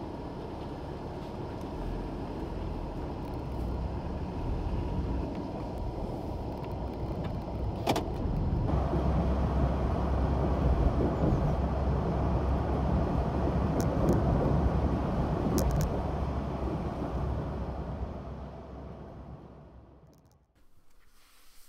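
Road traffic noise: a steady rumble of passing cars that grows louder a little before the middle, with a sharp click around then, and fades out near the end.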